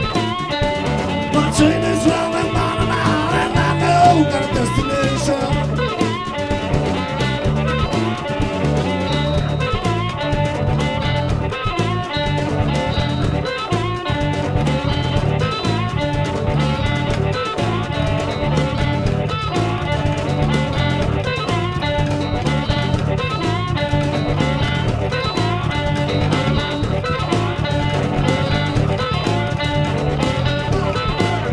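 A blues band playing live: harmonica over guitar, electric bass and drums, with a steady beat.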